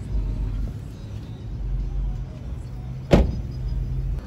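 A car door slammed shut once, sharply, about three seconds in, over low rumbling and a steady low hum.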